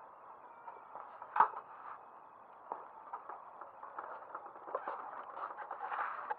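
Scattered light clicks and knocks of a small scooter being handled and mounted, the sharpest knock about a second and a half in, with more small clicks near the end.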